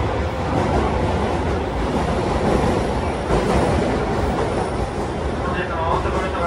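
Osaka Metro Sakaisuji Line subway train running, heard from inside the passenger car: a steady loud rumble of wheels on rail and running gear.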